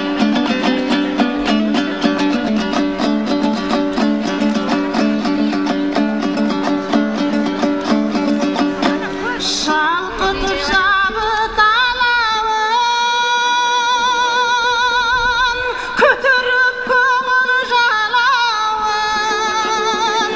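Kazakh dombyra strummed in a fast, driving rhythm as an instrumental introduction; about halfway through a woman's voice enters, singing a terme with a wavering vibrato over the continuing dombyra.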